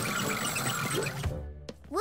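Cartoon background music with busy dash sound effects as a character rushes off, dipping quieter about a second and a half in, then a quick rising glide near the end.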